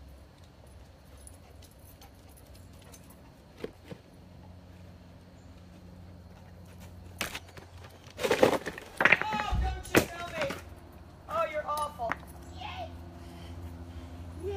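Dog-training dumbbells being pulled down by a dog: a burst of sharp knocks and a heavy thud about halfway through, mixed with short vocal sounds.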